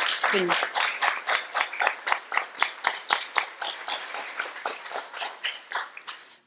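Audience applauding, the claps thinning out and dying away toward the end.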